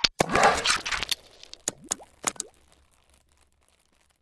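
Logo-animation sound effects: a sharp click, then a dense whooshing burst lasting about a second, followed by a handful of quick pops with rising pitch sweeps that fade out about three seconds in.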